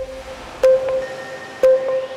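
Electronic theme music of a TV news bulletin: a sharp hit followed by a ringing note, twice about a second apart, with the low bass dropping away in the second half.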